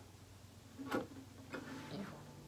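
Small acoustic guitar's strings picked one at a time, hesitantly. There are a few short, quiet plucks that barely ring: one about a second in and two smaller ones near the end.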